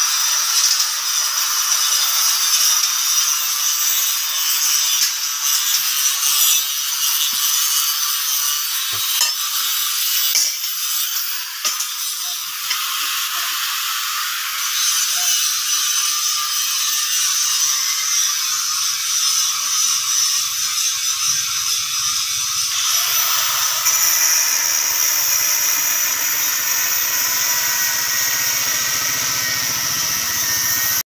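Angle grinder cutting or grinding steel: a continuous harsh high-pitched hiss. A lower rumble joins about three quarters of the way through.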